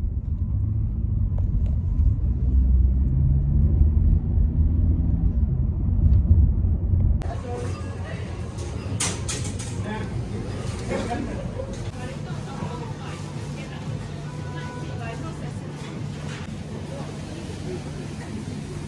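Steady low rumble of road and engine noise from inside a moving car. About seven seconds in it cuts suddenly to a quieter shop ambience, with scattered clinks and knocks over a general hubbub.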